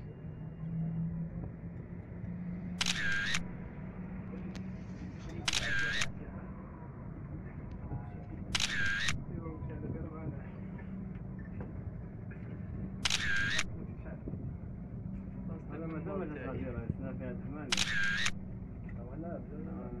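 Five camera shutter clicks, each about half a second long and alike, spaced a few seconds apart, over a steady low hum as if from inside a moving vehicle; faint voices come and go.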